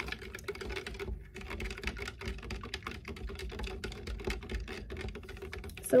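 A thin stir stick stirring borax into hot water in a plastic cup, with fast, irregular ticks and scrapes against the cup as the borax is still being dissolved.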